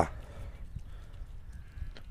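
Faint, soft sounds of a ewe licking and nuzzling her newborn lamb clean just after the birth.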